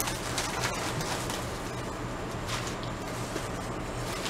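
Plastic bags and packing wrap rustling and crinkling as they are pulled open by hand, with irregular crackles, over a steady low hum.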